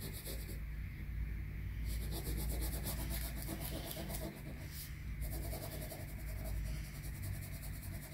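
Wax crayon rubbing back and forth on paper in quick, continuous coloring strokes: a steady, scratchy rasp.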